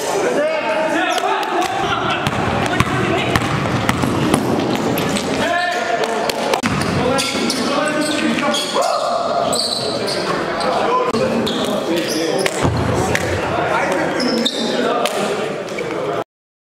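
Basketball bouncing and being dribbled on a gym floor during play, with players' indistinct voices and shouts echoing in the hall.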